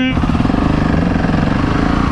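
KTM 690 SMC R single-cylinder engine running under throttle on the move: a steady, rapidly pulsing note.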